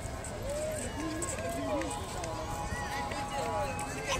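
Indistinct voices of people talking in a crowd, with no clear words, over a steady low background rumble.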